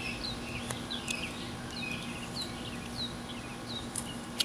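A bird chirping in the background: short, high, downward-sliding notes repeated about twice a second, over a steady low hum.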